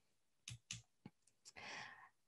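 Near silence with a few faint short clicks about half a second to a second in, then a faint soft breath-like sound near the end.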